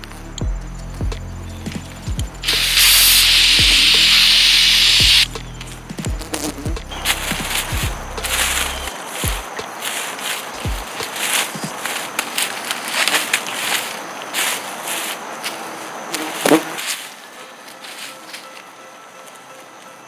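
Aerosol can of Wasp Freeze hornet spray hissing in one continuous burst of about three seconds, a couple of seconds in. Music plays underneath, and scattered knocks and rustles follow.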